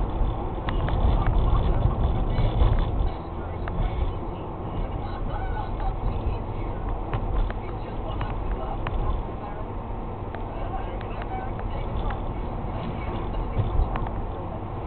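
Car interior noise heard through a dashcam's microphone: engine and tyre rumble while the car climbs a hill, louder for the first few seconds and then steadier and a little quieter, with scattered light ticks.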